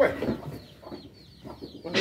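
Birds calling: short, high, falling chirps repeated about three or four times a second, with lower calls in between.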